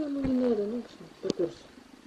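A domestic cat meowing: one long, drawn-out meow near the start that falls slightly in pitch, then a sharp click about a second and a half in.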